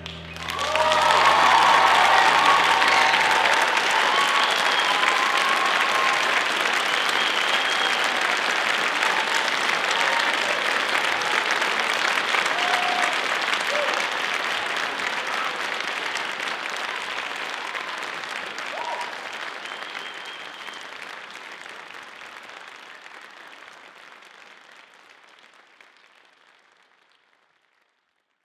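Audience applause and cheering with a few whoops, breaking out about a second in as the music ends, then fading out gradually near the end.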